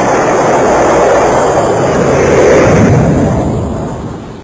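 A pyrotechnic charge burning off with a loud, steady rushing noise that dies away near the end.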